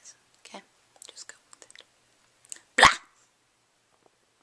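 Soft whispered sounds and mouth noises close to the microphone, then a single short, loud thump near the end.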